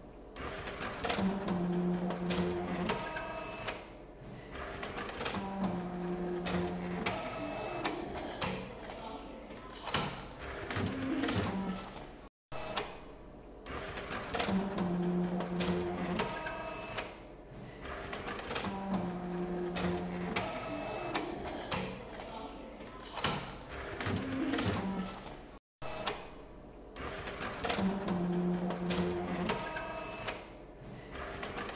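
Bank statement printer running: a motor whirring in short spells over rapid mechanical clicking as it prints and feeds out statements. The same pass of the sound repeats about every 13 seconds, each broken off by a brief dropout.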